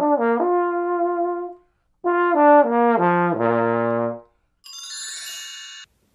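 A trombone plays two short phrases with notes that slide into one another, the second phrase stepping down to a low held note. Near the end comes a brief, quieter, high ringing sound.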